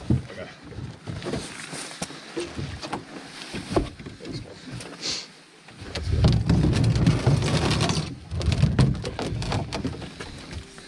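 Knocks, clunks and scrapes of a Langford canoe's hull being handled and lifted against a granite shoreline. From about six seconds in come two longer stretches of low rumbling scraping.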